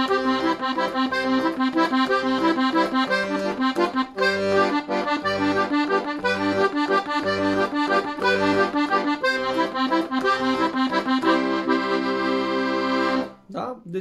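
Hohner Verdi II piano accordion playing an arpeggiated accompaniment pattern in a steady, even rhythm, using the variation in which the fourth note of the arpeggio is played before the third. It settles on a held chord near the end and stops abruptly.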